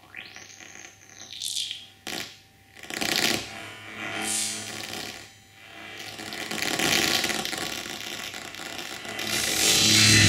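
Granular synthesizer (ag.granular.suite in Max/MSP) played live from a multitouch iPad controller: noisy electronic textures in swells and short bursts, with a rising sweep in the first second. The texture thickens and grows louder toward the end.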